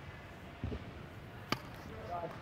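A tennis ball bouncing once on an indoor hard court: a single sharp tap about one and a half seconds in, with a faint dull thud before it.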